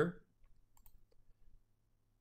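A few faint, scattered clicks of a computer mouse, after the tail of a spoken word at the start.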